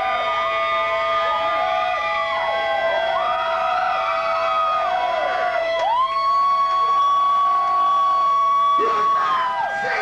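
Electric guitar feedback through an amplifier: several sustained whining tones that bend up and down in pitch like a siren, with one long steady high tone held from about six seconds in until just before the end.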